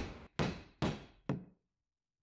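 Wooden mallet striking a round hole punch three times, about half a second apart, punching a hole through a leather belt strap; each strike is a sharp knock that dies away quickly.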